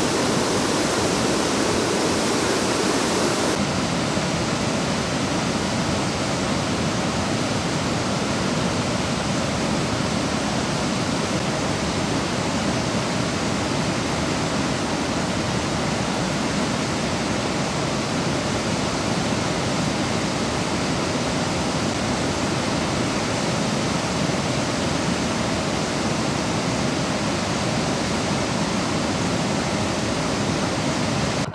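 Steady rush of floodwater pouring over a lake's stepped overflow weir, the tank spilling its surplus after heavy rain. A little of the high hiss drops away about three and a half seconds in.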